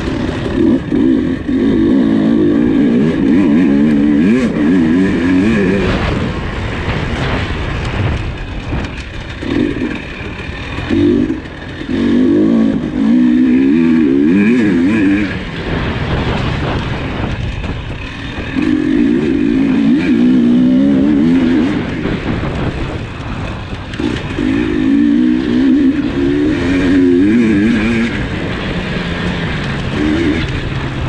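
KTM 300 XC two-stroke dirt bike engine under race riding, opening up hard in repeated loud bursts and dropping back between them as the rider works the throttle.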